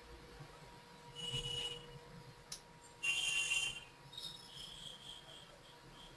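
Faint background noise of a voice-call line: two short hissy bursts carrying a thin whistling tone, a single click between them, and a faint steady tone underneath.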